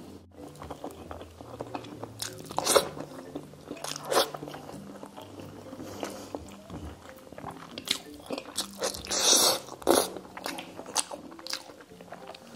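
Close-up chewing and biting of braised pork and rice eaten by hand: wet mouth noises with separate louder bites, the longest and loudest about nine to ten seconds in. Soft background music runs underneath.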